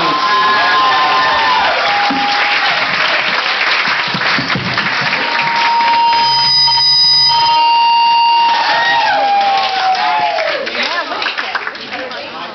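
Audience applauding and cheering, dying down in the last few seconds.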